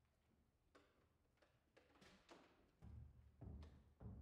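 Near silence: room tone with a few faint clicks, then some low thumps in the second half.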